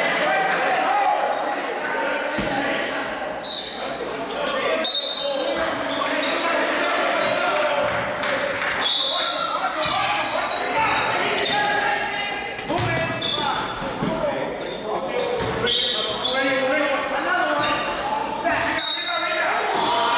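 Live basketball game sounds echoing in a large gym: a basketball bouncing on the floor, players and spectators calling out and talking, with short high squeaks scattered throughout.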